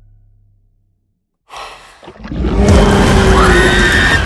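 Horror trailer sound design: a low drone fades into a brief silence, then a sudden hit about a second and a half in and a loud, dense noisy swell with a gliding high tone through it, a stinger leading into the title card.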